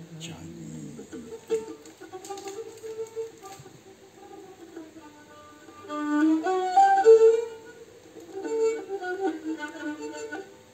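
Cretan lyra playing a bowed melody of held notes that step up and down in pitch, soft at first and louder from about six seconds in.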